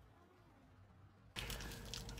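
Near silence, then about one and a half seconds in a low, steady car-cabin hum cuts in, with faint rustling.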